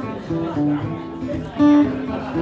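Steel-string acoustic guitar strummed, with chords ringing on and louder strums about a third of a second in and again near the end.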